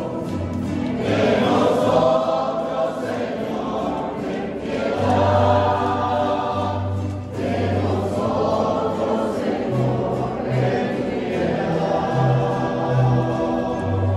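A congregation singing a hymn together, in phrases, over sustained low bass notes from an accompanying instrument.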